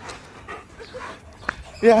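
Dogs meeting on leads: faint dog sounds, then a single short, sharp bark about one and a half seconds in, just before a person starts speaking near the end.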